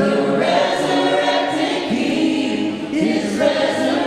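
Church worship team of several voices singing together, a gospel-style worship song with sustained, overlapping notes.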